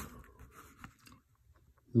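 A new No. 11 hobby-knife blade drawn along a straight edge through paper: faint scratching with a couple of small ticks in the first second, then almost nothing.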